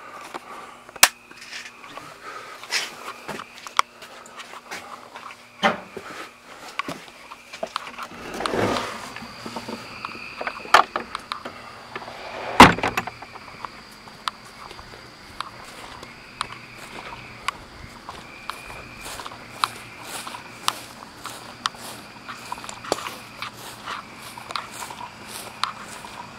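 Scattered clicks, knocks and handling sounds with footsteps of a person walking outdoors in the dark. A faint steady high tone comes and goes behind them.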